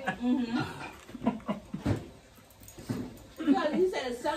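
Voices in conversation: short, indistinct utterances and murmurs, with a lull about two seconds in before talk picks up again near the end.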